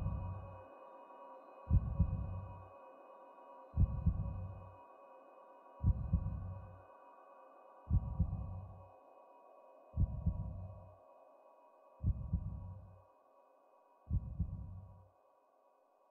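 Slow, deep heartbeat beat, a double thump about every two seconds, over a steady ambient drone of held tones that slowly fades away.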